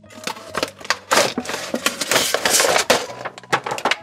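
Toy packaging being opened and handled: a cardboard box and a clear plastic blister tray crinkling and crackling, with many sharp clicks and snaps.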